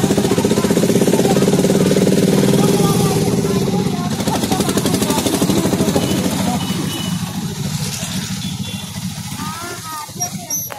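Motorcycle engine running with a steady hum, loudest for the first four seconds and then fading, amid street traffic.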